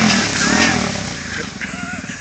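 Yamaha Warrior ATV engine coming off a rev, its level and pitch falling away toward a steady idle.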